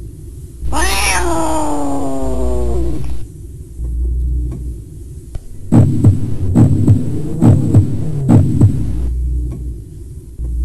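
A long cat-like yowl that slides steadily down in pitch for about two seconds, followed a few seconds later by a run of dull knocks, over a low throbbing hum.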